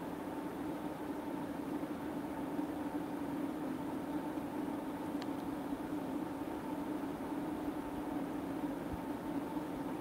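A steady low hum of running equipment with a faint hiss, and a faint tick about five seconds in.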